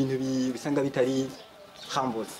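A man's voice: a drawn-out sound held at one steady pitch, ending about half a second in, then a few short spoken syllables.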